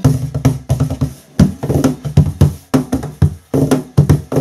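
Wooden cajon played by hand in a quick, steady groove of deep bass tones and sharper slaps on its front face, about five strokes a second.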